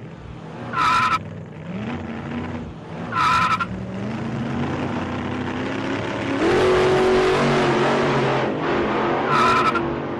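Car engine running and revving up, with three short, high tire squeals: about a second in, at about three seconds, and near the end.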